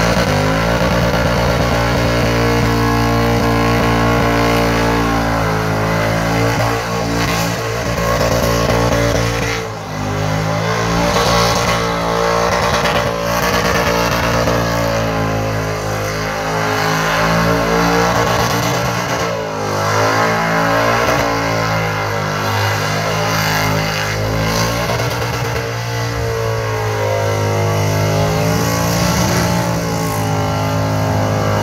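A Chevrolet LS1 V8 in a KE Corolla is held at high revs through a burnout, its pitch wavering up and down, over the noise of the spinning rear tyres. The engine note dips briefly about a third of the way in and again near the middle.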